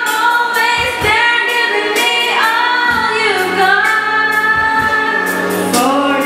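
A song with a woman singing long held notes over backing music with a drum beat.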